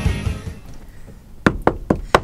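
Rock intro music ending in the first half second, then three sharp knocks in quick succession near the end.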